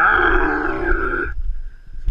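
A person's loud, drawn-out yell, rising in pitch at the start and held for about a second and a half before cutting off.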